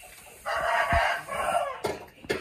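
A rooster crowing once, a call of about a second and a half that starts about half a second in and falls away at the end.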